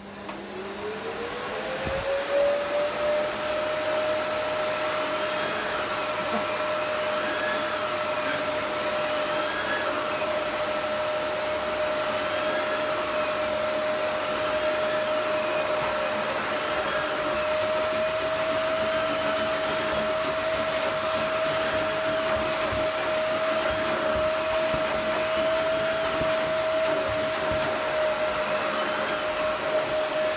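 Cylinder vacuum cleaner motor spinning up over about three seconds to a steady whine, then running while its floor head is pushed over sand and sawdust on carpet, with a faint waver every couple of seconds as the head goes back and forth.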